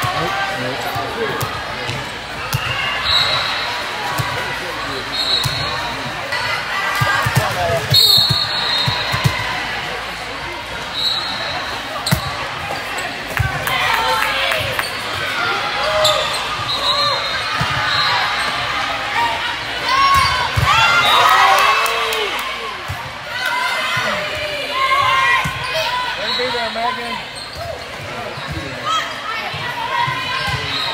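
Indoor volleyball play in a large hall: the ball being served, passed and hit, sneakers squeaking on the court, and players and spectators calling out, with echo from the hall.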